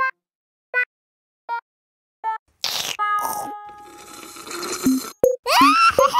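Cartoon sound effects of sipping through a straw: four short pitched sips evenly spaced, then a longer noisy slurp with held tones. Near the end comes a rising squeal and a few short pitched pops.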